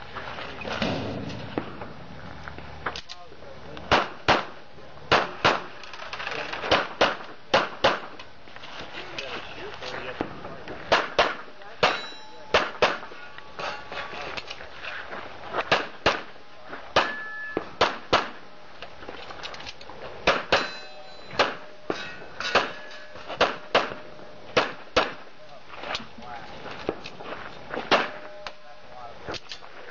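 Pistol shots fired in a rapid course of fire, dozens of them, many in quick pairs, with short breaks while the shooter moves between positions. A brief metallic ring follows a few of the shots.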